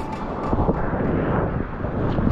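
Water rushing past a surfboard riding a wave, with wind buffeting the action camera's microphone: a steady, dull low rumble with little hiss.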